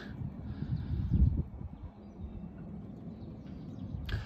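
Low rumble of wind buffeting the phone's microphone on an open boat deck, with a stronger gust about a second in.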